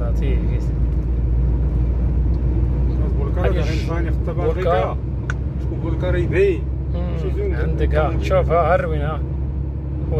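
Steady low rumble heard from inside a vehicle's cab as it drives through a strong sandstorm. A voice breaks in with drawn-out cries around the middle and again near the end.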